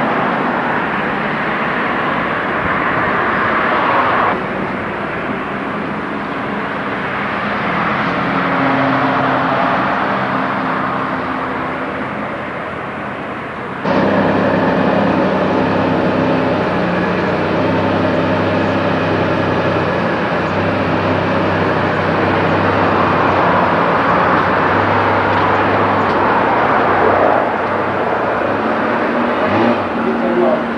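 Car engine running steadily. About 14 seconds in the sound cuts suddenly to a louder engine with a steady low hum.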